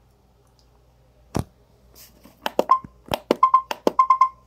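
Roomba robot vacuum in its test mode: one sharp click about a second and a half in, then a quick run of clicks from about two seconds in, several followed by short beeps, as its buttons are pressed.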